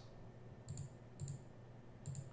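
Two faint computer mouse clicks, about half a second apart, over quiet room tone.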